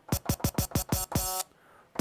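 A dance track playing through Serato DJ Pro stutters as a Mixars Quattro performance pad set as a temporary cue point is tapped rapidly, restarting the same snippet several times a second. It cuts off to silence about a second and a half in.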